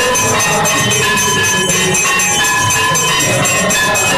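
Many temple bells and gongs clanging rapidly and without a break during an aarti. The result is a loud, dense wall of metallic ringing with a clatter underneath.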